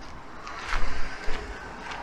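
Footsteps on gravel, a few short steps, over a low rumble of wind on the microphone.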